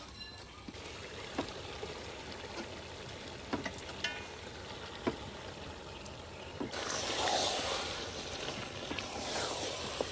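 Raw chicken pieces going into a pot of hot spiced masala, which sizzles as a soft steady hiss with a few light clicks of the ladle against the pot. The sizzle grows louder about seven seconds in.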